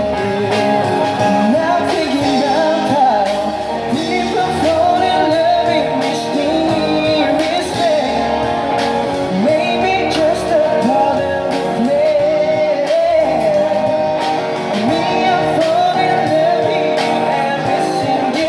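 Live rock band playing a song: acoustic and electric guitars and a drum kit, with a voice singing over them.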